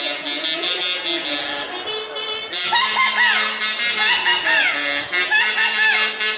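Live huaylarsh band music: reed and brass melody over a steady beat. From about halfway, high sliding notes rise and fall above it.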